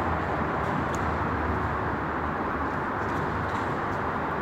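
Steady background noise with a low hum and one faint click about a second in.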